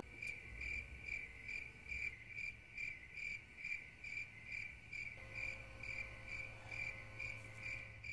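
A cricket chirping steadily, a little over two even chirps a second, over a faint low hum: the stock sound effect for an awkward silence.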